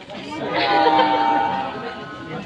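A crowd of people chattering, with one voice rising loud about half a second in and holding for about a second before falling back into the background talk.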